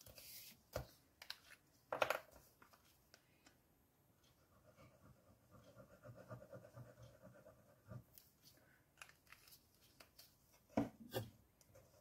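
Quiet handling of paper and a liquid glue bottle on a craft mat: scattered light taps and rustles as liquid glue is spread on a paper strip and the strip is pressed down, with the firmest taps about two seconds in and near the end.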